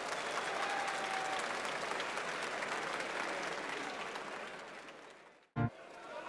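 Arena crowd applauding and cheering at the end of a boxing round, the noise fading away in the last couple of seconds and cutting off. A brief loud sound follows just before the end.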